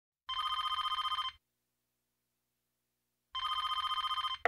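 Telephone ringing twice: a fast warbling ring about a second long, then silence, then a second ring beginning near the end.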